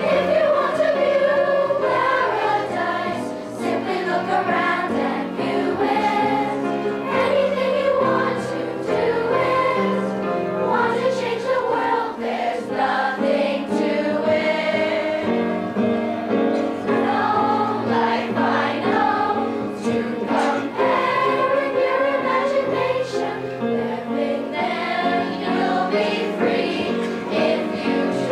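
Children's chorus singing a song together with musical accompaniment.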